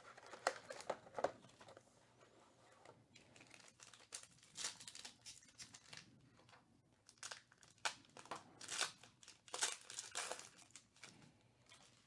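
Foil wrapper of a 2019 Panini Chronicles baseball card pack crinkling and tearing as it is lifted from the hobby box and ripped open by hand: faint, irregular crackles and short rips in several clusters.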